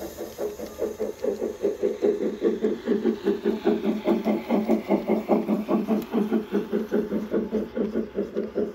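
A model train locomotive running past, making a steady rhythmic pulsing beat of about four to five beats a second that grows louder from about a second and a half in.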